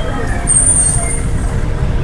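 Loud low rumble of road traffic, with a brief high-pitched squeal, like a vehicle's brakes, about half a second in.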